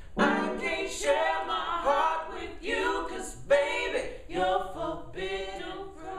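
Voices singing a cappella, without instruments, in short sung phrases of about a second each.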